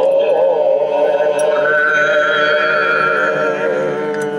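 A group of men singing a sacred chant in several voices. About a second and a half in they settle onto one long held chord.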